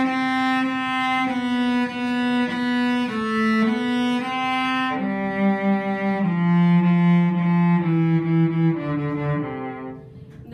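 Solo cello bowed: a slow melody of held and repeated notes, moving lower in its second half.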